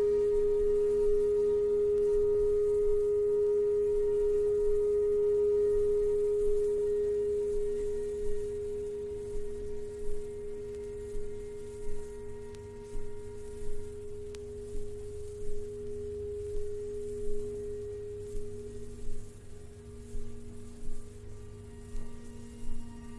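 Electronic drone music: one loud, steady, pure tone held throughout, with a quieter lower tone beneath it. From about eight seconds in, a soft pulse sounds roughly once a second underneath, and near the end the main tone fades.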